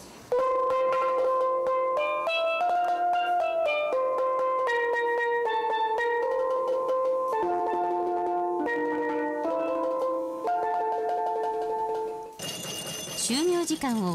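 Steelpan playing a melody of single struck, ringing notes, each note's pitch set by the size and angle of its hammered face. The tune cuts off about twelve seconds in, giving way to noise and voices.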